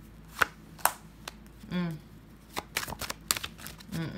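Tarot deck being shuffled by hand: two sharp card clicks about half a second apart near the start, then a quick run of card flicks in the second half.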